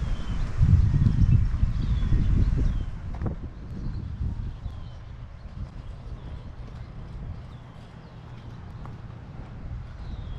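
Low, uneven rumbling on the microphone for about the first three seconds, then a quieter outdoor background with faint, repeated short bird chirps.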